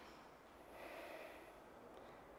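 Near silence: room tone, with a faint soft rush of noise about a second in.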